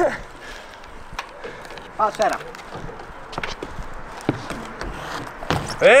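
Small BMX rolling across a concrete skatepark: steady tyre noise with a few sharp knocks.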